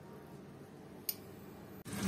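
Quiet kitchen background with one light click about a second in. Just before the end, pieces of floured lamprey start sizzling in hot oil in a frying pan.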